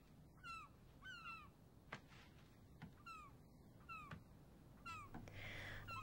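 Faint cries of gulls: short calls that slide downward in pitch, some in pairs, recurring about once a second.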